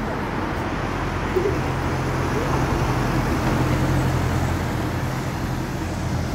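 Road traffic noise on a city street, with a vehicle engine's steady low hum through most of it.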